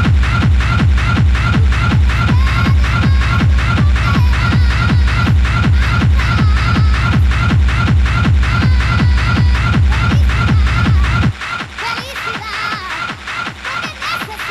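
Schranz hard techno from a DJ set: a fast, steady kick drum under a repeating high synth blip and clattering percussion. The kick drops out about eleven seconds in, leaving only the higher percussion.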